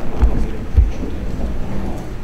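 Low rumble and dull thumps of a handheld camera being moved, its microphone picking up handling noise.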